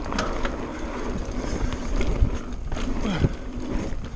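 Mountain bike rolling fast over a dirt trail: a steady rumble of tyres on dirt, with the bike rattling and knocking over bumps and wind rushing over the handlebar-mounted camera microphone.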